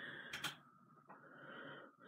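Near silence: quiet room tone, with a brief faint sound about half a second in.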